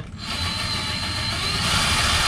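Cordless drill driving a screw up through a ceiling panel, its motor starting just after the start and running steadily with a thin high whine.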